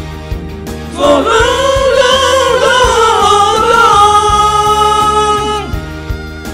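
Pop song karaoke backing track with a steady drum beat, and several singers joining about a second in to hold one long sung note, which ends just before the close.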